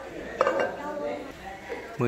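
A glazed Bát Tràng ceramic basin set down on a tiled floor: one sharp clink about half a second in, followed by a short ringing.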